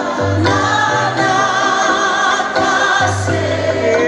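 Live music: a group of voices singing together over an accompaniment with long held bass notes.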